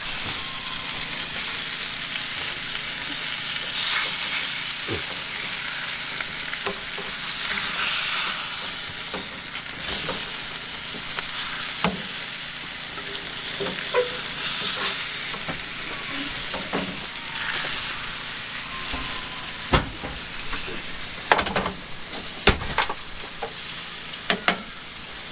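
Floured yellow belly fillets sizzling steadily in hot olive oil in a frying pan, with scattered scrapes and knocks of a spatula against the pan as the fillets are flipped; the sharpest knocks come a few seconds before the end.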